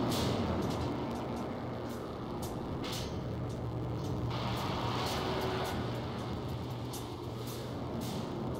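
Dark ambient music from a VCV Rack software modular synth patch: a low steady drone under a rushing, hissing noise texture that thickens about halfway through, with scattered faint clicks.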